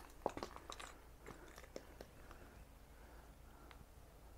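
Nearly quiet, with a few faint scattered clicks and crunches, most of them in the first two seconds and one more near the end.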